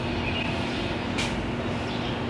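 Steady outdoor background rumble with a constant low hum, and a few faint short high chirps and ticks.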